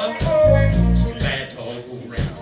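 Live band playing a Motown soul song: electric guitar and keyboards over drums and bass, with cymbal strokes about four times a second.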